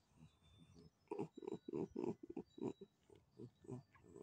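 A domestic cat purring in short, rough pulses, about four a second, while it is stroked close to the microphone; the pulses begin about a second in.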